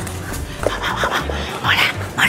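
Dog-like whimpering yelps, a few short high cries that are loudest near the end, over a low music beat.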